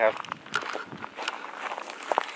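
Footsteps of a person walking on a dry dirt and pine-litter forest trail: irregular short scuffs and crunches. One spoken word comes at the very start.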